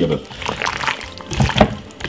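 Wet squelching of a plastic-gloved hand squeezing and turning raw chicken pieces in a thick curry marinade in a glass bowl, in irregular squishes, the loudest about a second and a half in.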